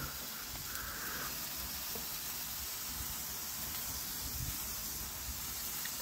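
TAKO Suppressor handheld gun-shaped fountain firework burning with a steady hiss as it sprays gold sparks from the muzzle.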